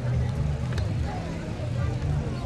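Road-race ambience: indistinct voices of runners and spectators over a steady low rumble, with a few light ticks of footsteps.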